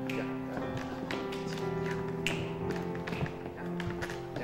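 Recorded dance music playing, with dance shoes tapping and stepping sharply on a hardwood floor at irregular moments over it.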